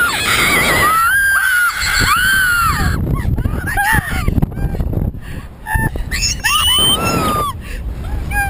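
A woman and a boy screaming and laughing on a Slingshot ride: long high shrieks in the first three seconds, then a quieter spell, then another shriek about seven seconds in, over a low rumble of wind on the microphone.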